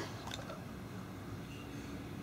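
Quiet room tone with a few faint clicks in the first half-second, as the plastic cap of an inhaler is worked open between the fingers.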